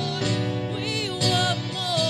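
Live church worship band playing a slow song, acoustic guitar and keyboard under voices singing with wavering, held notes.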